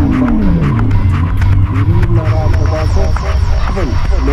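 Electro track built on sampled loops: a steady bass and quick, regular hi-hat-like strokes under a synth line that glides up and falls back, with short stepped tones later on.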